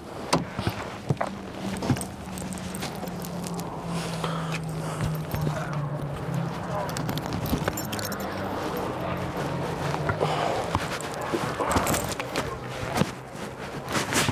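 Scattered knocks and clicks as a driver climbs out of a race car's cockpit, over a steady low hum that fades about ten seconds in.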